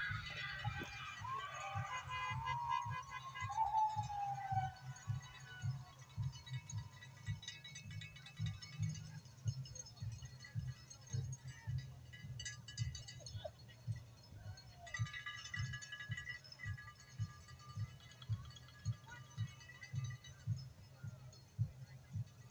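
A marching band playing in the distance: a steady drum beat, with brass notes on and off through the middle.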